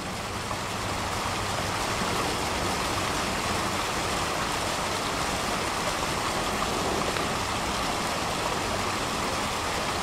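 Water rushing down a small artificial rock waterfall into a pond: a steady wash of splashing noise that fades up over the first second or so, with a faint low hum underneath.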